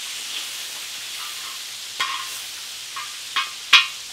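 Chicken wings and bacon sizzling in hot oil on a propane-fired plow-disc cooker. A metal spatula scrapes and clacks against the steel disc a few times, the loudest clack near the end.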